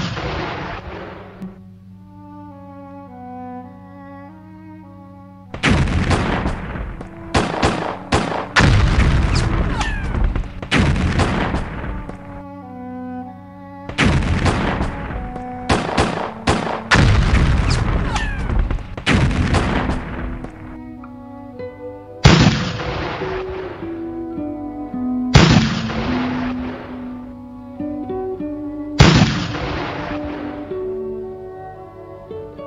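Cannon fire over background music: a rapid barrage of overlapping shots from about six seconds in, a short lull, a second barrage, then three single cannon blasts a few seconds apart, each with a fading tail.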